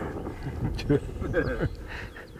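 A man's voice in short fragments that are not words, the longest falling in pitch a little before the end.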